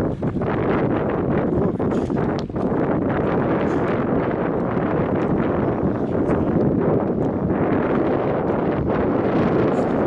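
Wind buffeting the microphone: a steady, loud rumbling noise with brief dips just after the start and about two and a half seconds in.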